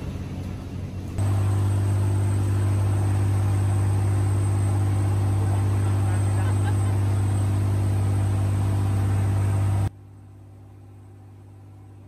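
Motorboat engine running at steady speed, a loud constant low drone with the rush of water and wind over it. About ten seconds in the level drops suddenly to a much quieter steady hum.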